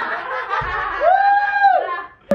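A group of young women laughing, then one high, drawn-out 'wuuuuh' held for about a second near the end.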